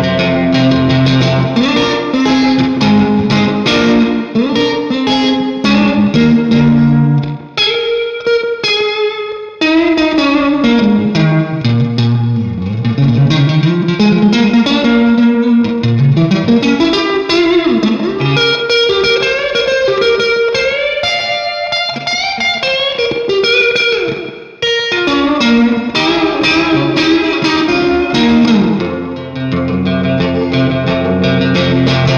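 Stratocaster-style electric guitar played through a Keeley Caverns V2 pedal set to a wet spring reverb with fast tremolo in the trails. It plays a melodic line with notes sliding up and down through the middle, and the sound drops briefly a few times.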